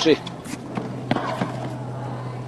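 Tennis ball struck by rackets and bouncing on a hard court during a rally: a few short sharp pops in the first second and a half, over a steady low hum.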